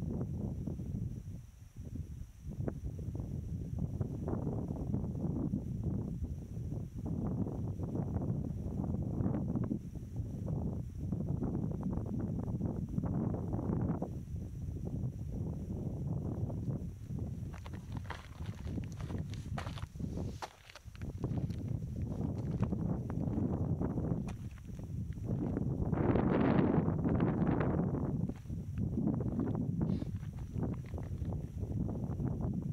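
Wind buffeting the microphone: a low, rumbling noise that swells and dips in gusts. In the later part, footsteps crunching over rough salt crust are mixed in.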